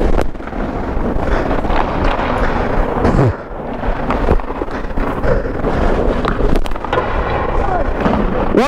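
Loud, muffled rumble and rustle from a body-worn microphone on a hockey goalie shifting in his gear, with indistinct voices and a falling tone about three seconds in.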